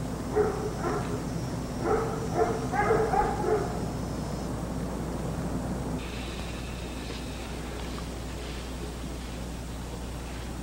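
A dog barking about eight times in quick short barks over the first four seconds, then stopping, over a steady low hum.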